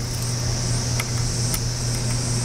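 A steady low hum under a high, even hiss, with three faint single clicks spread across the two seconds.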